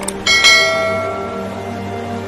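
A bell-chime notification sound effect of the kind used in a subscribe animation. It rings out sharply about half a second in and fades slowly, just after a couple of quick mouse-click sounds, over background music.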